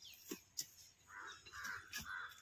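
A crow cawing in a quick run of calls in the second half, over scattered short knocks of hoes digging into dry soil.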